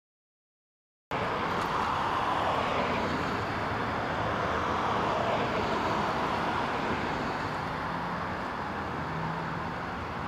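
Steady road traffic noise that cuts in suddenly about a second in, an even rushing sound with a faint low engine hum underneath.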